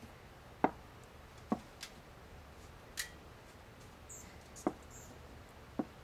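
Wooden chess pieces being picked up and set down on a wooden chessboard: about six short, sharp clicks at irregular intervals.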